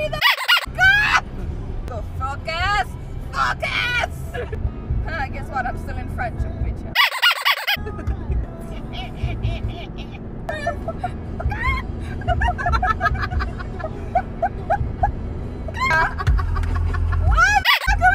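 Young women's voices singing with music over the steady low hum of the car on the road. The low hum drops out briefly twice, near the start and about seven seconds in.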